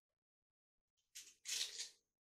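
Kitchen knife slicing through a tough raw ginger root held in the hand: two short crunchy cuts, the first about a second in and the second a moment later.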